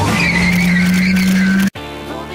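Car engine holding a steady note with a high, wavering tyre squeal over it. It cuts off abruptly near the end, and live pop music with singing follows.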